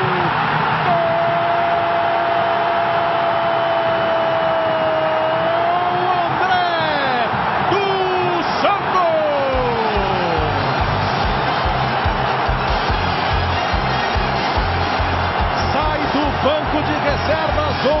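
A TV commentator's drawn-out goal cry, held on one note for about five seconds, then falling cries, over a steady roar of stadium crowd noise. About halfway through, music with a steady drum beat comes in.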